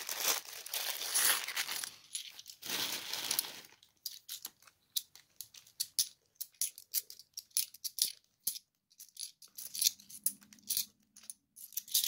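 A clear plastic bag of £2 coins crinkles as hands dig into it during the first few seconds. Then the coins clink and slide against one another in the hand, many small sharp clicks with short pauses between them.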